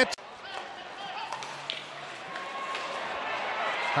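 Indoor bandy arena background: low, steady crowd noise with faint distant voices and an occasional knock from play on the ice.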